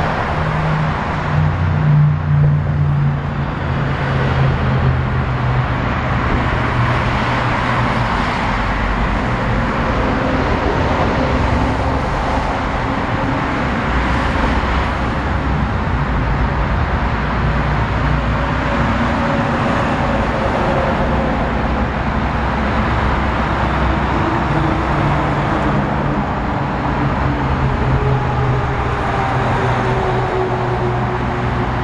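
Steady road traffic from a highway: cars and semi trucks passing, with the low drone of heavy truck engines, heard from beneath a concrete overpass.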